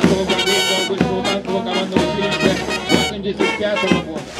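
Brass band playing a march, with a steady beat under the held brass notes.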